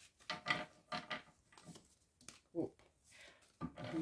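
A deck of oracle cards being handled and shuffled by hand, with a card drawn and laid down: a scatter of soft, short rustles and taps.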